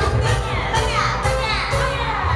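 K-pop dance remix playing loud through an outdoor stage sound system, with a heavy bass beat. Voices run over it, with falling vocal glides in the middle.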